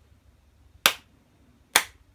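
Two sharp hand claps about a second apart.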